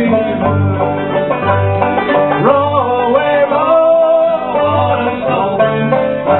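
Live old-time string band playing an up-tempo tune on acoustic guitar, banjo and mandolin, with a steady bass pulse from the guitar. A man's singing voice comes in around the middle.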